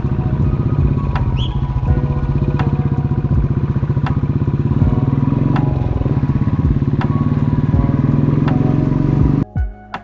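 Motorcycle engine and exhaust running under way, a loud, fast, steady pulsing that cuts off abruptly near the end. Background music with a steady beat plays faintly underneath and carries on alone after the cut.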